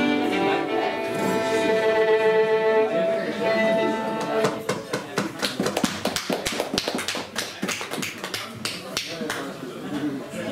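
Fiddle and acoustic guitars ending a tune on long held notes, then, about four and a half seconds in, a quick irregular run of sharp taps lasting about five seconds, with voices around them.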